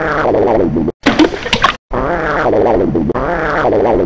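Cartoon toilet sound effect: a long, wavering pitched fart sound. It breaks off about a second in for a short, crackly splattering burst, then the same wavering sound starts again.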